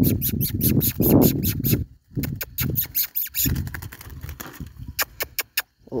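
A captured red-cowled cardinal giving a rapid series of sharp alarm chips, about seven a second, over rustling handling noise. The chips break off about two seconds in, then resume more sparsely.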